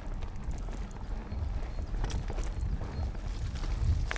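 Chromag Stylus steel hardtail mountain bike riding fast down a dirt forest trail: a steady low rumble of tyres on the ground, with scattered sharp knocks and rattles as the bike goes over bumps and roots.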